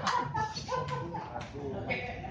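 Men's voices calling out and talking in a hall as a table tennis point ends, with one last click of the ball at the start.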